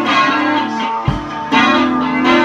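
Electric guitar and drum kit playing live together: sustained, ringing guitar chords over drum hits, with a low kick-drum thump about a second in and crash-like hits at the start and about one and a half seconds in.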